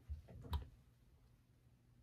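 Soft handling clicks, the sharpest about half a second in, then quiet room tone.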